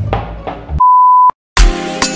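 A single steady electronic beep, one high tone held for about half a second and cut off sharply, after a brief stretch of background sound. After a short silence, upbeat music starts with a sudden hit near the end.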